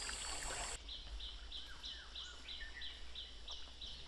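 Running water of a small forest stream for the first moment. After a cut comes quieter forest ambience with a high, regular chirping about three times a second and a few faint bird calls.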